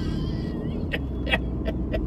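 Steady low road and engine rumble inside a moving car's cabin, with a few short sharp clicks in the second half.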